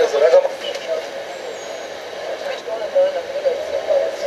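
Indistinct voices talking, with a lull of a second or so in the middle before the talk picks up again.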